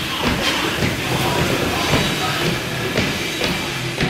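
Skating treadmill's slatted belt running under a goalie's skates, with irregular clacks, over background music.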